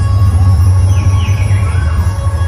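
Loud dhumal band music: large stick-beaten drums pounding densely and fast under steady held melodic tones, with a few short whistle-like glides about a second in.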